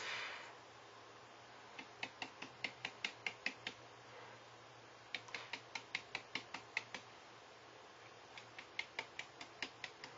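Bristle brush stippling thick rust effects paste onto bookboard: faint, quick dabbing taps about four a second, in three runs with short pauses between.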